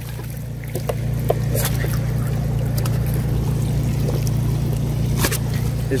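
Water trickling and splashing out of the slits along a knife-cut perforated corrugated drainage pipe onto plastic sheeting as the pipe disperses the water, over a steady low machine hum.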